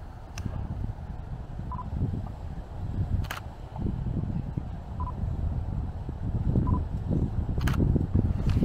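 Low, uneven rumble of a handheld camera being moved about, with three short beeps and two sharp clicks.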